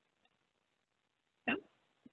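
Near silence, then about one and a half seconds in a single short, clipped spoken syllable, "no".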